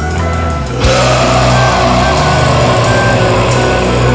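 Live black metal music: sustained keyboard-like tones, then about a second in the full band comes in loud with distorted electric guitars, drums and cymbals, and a long held vocal over them.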